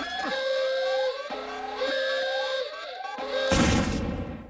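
Cartoon soundtrack music with repeated quick rising whistle-like glides over held notes. About three and a half seconds in, a loud burst of noise breaks in and then dies away.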